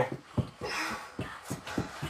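Children breathing hard while doing flutter kicks on a carpeted floor, with an airy exhale about half a second in and a few soft thuds scattered through.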